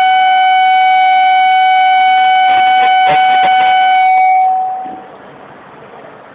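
Public-address microphone feedback: a loud, steady ringing tone held at one pitch with a few overtones, fading away about four and a half seconds in.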